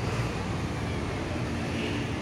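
Steady outdoor city street noise: a low, even rumble of traffic.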